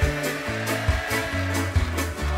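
Live reggae band playing an instrumental passage: a bass line in held notes, regular drum hits and sustained electric organ chords.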